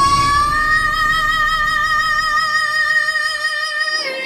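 Female singer holding one long, high final note live, stepping up slightly in pitch about half a second in, with vibrato growing toward the end. The low backing accompaniment fades out partway through.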